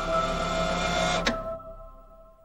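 Choral closing theme music ending on a held chord: steady sustained notes, cut off by a click a little over a second in, then fading away.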